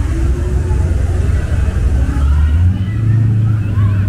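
A car engine runs close by with a deep, steady rumble, its pitch stepping up slightly past the middle as the revs rise. Voices of passers-by are heard faintly over it.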